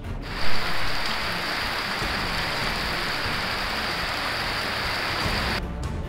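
Heavy monsoon rain pouring in a steady, even hiss, with a short loud burst about half a second in. It stops abruptly near the end.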